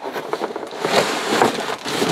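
Cardboard scraping and rustling as an inner cardboard box is slid out of an opened outer carton, loudest about a second in.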